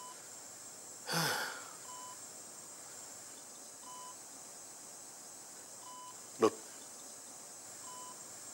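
Bedside patient monitor beeping one short tone about every two seconds, the steady pulse beep of a hospital vital-signs monitor. A short breathy rush sounds about a second in.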